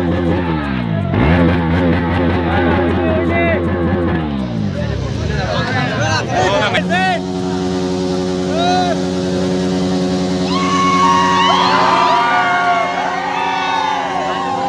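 A crowd of young men shouting excitedly, with an engine-like hum underneath that falls in pitch over the first few seconds and then holds steady. The shouting swells in the second half.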